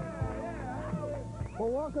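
Rock-style theme music with a beat plays for about the first second and then ends. Near the end a man's voice begins speaking.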